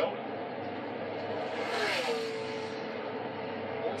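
NASCAR Cup stock car's V8 engine running at full speed, played through a television's speaker: a steady rush that swells about two seconds in as the car passes the microphone, its pitch dropping and then holding.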